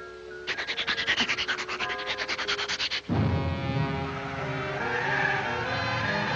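Cartoon scrubbing sound effect: a quick rasping rub repeated about ten times a second for two and a half seconds over light music, as the bird scrubs himself with a lily bud like a bath brush. Then full, low orchestral music comes in suddenly.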